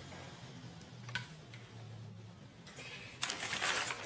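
Quiet room with faint handling noises: one light click about a second in and a short rustle near the end, over a low hum.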